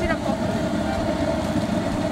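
Busy street traffic: vehicle engines running, over a steady hum.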